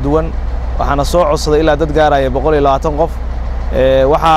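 A man's voice speaking steadily into a microphone, over a steady low hum.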